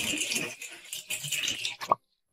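Cartoon sound effect of a whale being squeezed down a bath plug hole: an irregular rattling noise, ending in a short rising swoosh.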